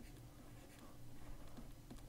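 Faint scratching of a stylus writing on a tablet, over a low steady hum.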